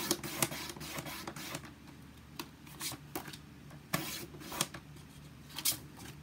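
A paper trimmer's sliding blade cutting cardstock, with sheets being handled and set down: a run of irregular clicks and paper rustles.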